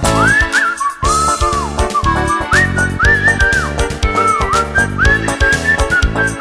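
Live band music with a steady beat, acoustic guitar and bass guitar, while a sliding melody is whistled over the top in short phrases.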